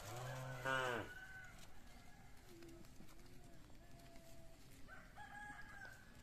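Farm animal calls: a loud, low call about a second long at the start, then fainter chicken and rooster calls, with a held call near the end.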